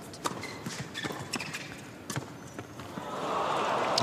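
Tennis ball bouncing on the court and struck by rackets in a short serve and rally: a handful of sharp knocks. In the last second the crowd's applause and cheering build.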